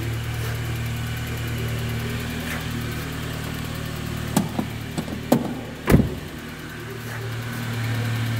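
1998 Saab 9-3 SE's engine idling steadily, its hum fading for a few seconds in the middle and then returning. A few sharp knocks, the loudest about six seconds in, cut across it.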